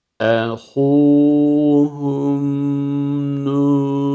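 A man reciting the Quranic Arabic phrase 'akhūhum Nūḥ' in melodic tajweed chant. A short falling syllable opens it, then long notes are held on a steady pitch.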